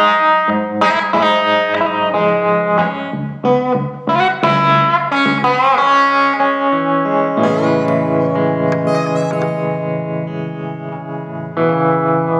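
Solo electric blues guitar playing picked single-note phrases with notes bent upward, then letting a low chord ring out for several seconds before a new phrase starts near the end.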